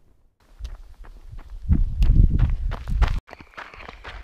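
A runner's footfalls on a mountain dirt track, about three steps a second, with a loud low rumble on the camera microphone from about two to three seconds in.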